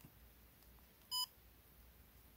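A single short electronic beep from a DJI Osmo Pocket gimbal camera about a second in, as a button on it is pressed.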